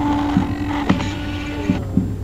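Dual-extruder 3D printer printing: its stepper motors hum a steady tone that drops in pitch near the end as the print head changes moves, with a few short clicks, over a low hum.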